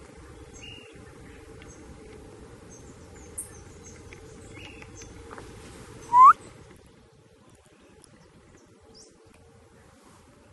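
Faint bird chirps scattered over a low, steady outdoor background, with one short, loud rising squeal about six seconds in that stands out as the loudest sound.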